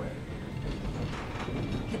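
Low steady rumble with faint mechanical rattling inside a railway passenger car, the running noise of the train.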